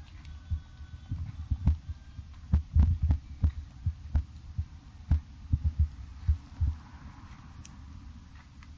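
Irregular low thumps and knocks from a handheld camera being moved and handled close up, with a few sharper clicks among them.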